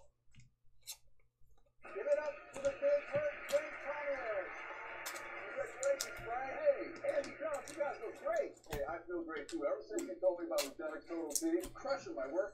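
Television commercial voice playing in the background, muffled with a steady hiss behind it, starting after a near-silent second or two, over scattered light clicks.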